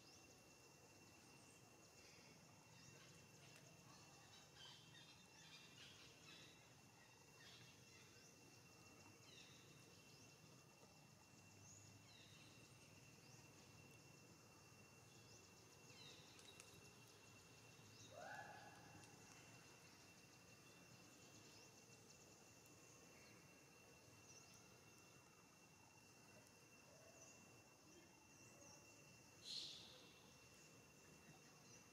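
Near silence: faint outdoor ambience with a thin steady high tone and scattered small chirps. A brief, slightly louder rising call comes about two-thirds of the way through, and a short sharp sound near the end.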